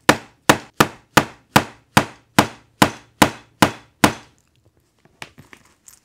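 Hammer tapping a metal snap-button setting tool about eleven times, roughly two and a half strikes a second, each a short ringing tap, stopping about four seconds in; a few faint handling sounds follow. The taps clinch the socket half of a press stud through a parka's fabric.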